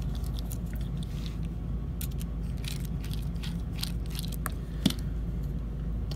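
Torx driver working the small screws of linen micarta knife handle scales: scattered faint clicks and scrapes of metal bit against screw head, with one sharper click near the end, over a steady low hum.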